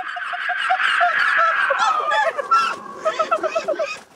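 A flock of birds calling all at once, many overlapping calls with short ones repeating several times a second, dipping briefly near the end.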